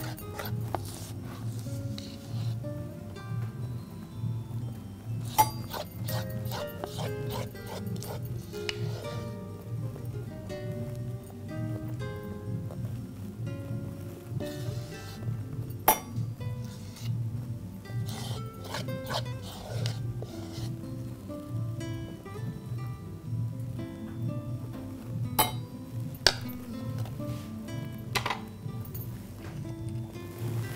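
Background instrumental music with a steady pulsing beat. A few sharp clinks, spaced several seconds apart, come from a metal spoon striking and scraping a ceramic bowl as the brownie mixture is scraped out.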